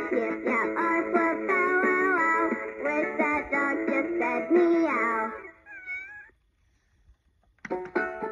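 B. Toys Woofer toy dog guitar playing a pre-recorded electronic tune through its small speaker, with a synthetic dog-howl voice bending up and down in pitch over the melody. The tune stops about five seconds in, one last howl glides and fades, and after a second or so of silence the next tune starts near the end.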